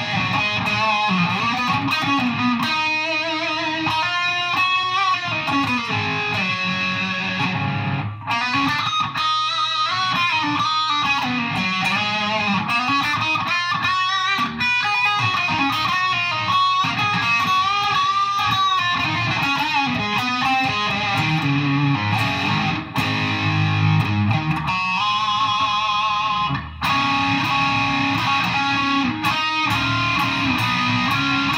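Electric guitar on its bridge PAF humbucker, played through the Digitech RP-80's high-gain 'Stack' preset into a Peavey Vypyr combo amp: distorted riffs and chords with plenty of gain. The playing has a few brief breaks.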